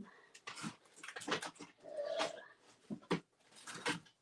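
Rummaging for a small wood piece under a craft desk: scattered clicks, knocks and rustles of things being moved, with one short whine-like tone about halfway through.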